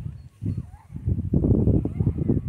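Wind buffeting the microphone in irregular gusts of low rumble, louder in the second half.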